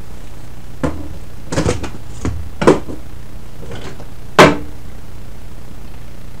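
A wooden block knocking on a thin sheet-metal box, about eight sharp taps. There is a quick triple near the start, and the two loudest come in the middle and about four seconds in.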